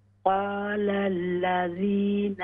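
A man chanting Quranic recitation in tajweed style, drawing out long held syllables. It begins about a quarter second in and has a short break near the end. The sound is thin and cut off at the top, as over a telephone line.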